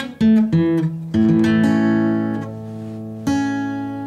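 Steel-string acoustic guitar: two single notes picked, then an A chord strummed about a second in and left to ring, and strummed again near the end.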